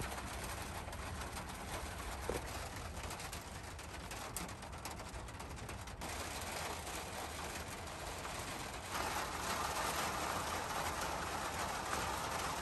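Rain pattering steadily, growing heavier about three quarters of the way through. A bird coos in the background.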